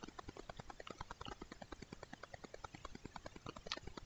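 Faint, irregular clicking, several small clicks a second.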